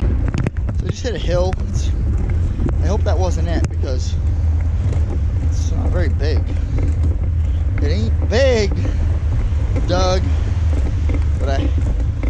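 Steady low wind rumble on the microphone from riding along on a trike, with a man's voice speaking in short phrases over it.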